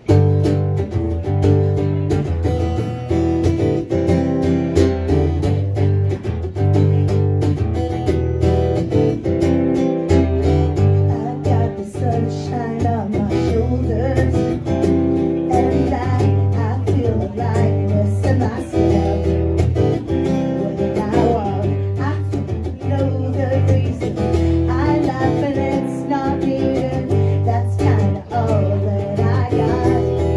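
Solo acoustic guitar strummed from the first chord, joined about halfway through by a woman singing.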